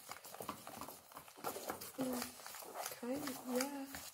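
Spoons scraping and clicking against clear plastic tubs while a stiff, powdery mix of cornstarch and baby lotion is stirred: a quick, uneven run of short scrapes.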